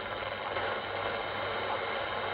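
Kenwood TS-590S HF transceiver's speaker giving steady 40-metre band static on lower sideband while no station is transmitting. The hiss stops abruptly above about 4 kHz at the receive filter's edge, with a faint low hum under it.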